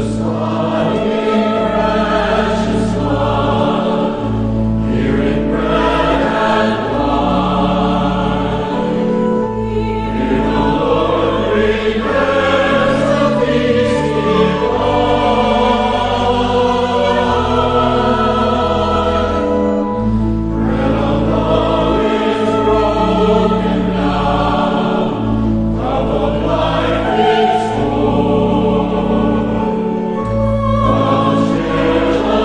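Church choir singing a hymn over steady, held accompaniment chords that change every few seconds.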